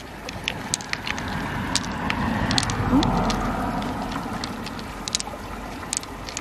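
Pearls clicking against one another and against the mussel shell as they are picked out and added to a handful, with sharp, irregular clicks throughout. A low rushing noise swells and fades in the background around the middle.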